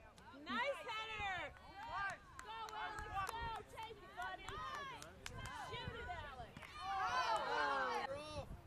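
Several high-pitched voices calling and shouting indistinctly over one another across a soccer field, growing loudest near the end.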